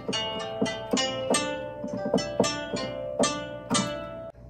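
Sampled guzheng (Chinese zither) in GarageBand on an iPad, played from a MIDI keyboard: a pentatonic melody of about a dozen plucked notes, each ringing and fading.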